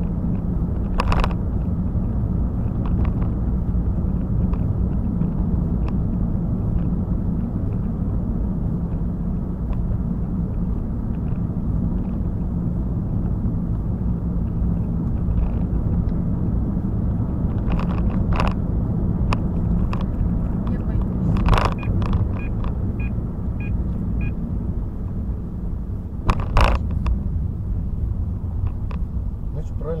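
Steady low road and engine rumble inside a moving car's cabin, with a few brief sharp knocks or clicks scattered through it.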